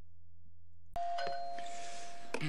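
A steady low hum, then about a second in the sound cuts abruptly to a held chime-like ringing tone over hiss.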